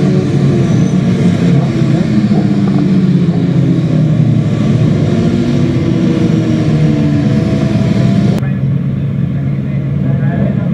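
Several 600cc racing motorcycles running together as the pack rides past, their overlapping engine notes rising and falling. About eight seconds in the sound changes abruptly to a duller, steadier engine note from the bikes waiting on the start grid.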